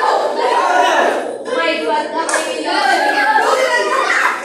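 A group of children shouting and cheering over one another, many voices at once without a break.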